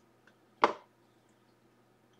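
One short, sharp knock about half a second in, with a faint click just before it, as a small stack of trading cards is handled and knocked against the table; a low steady hum runs underneath.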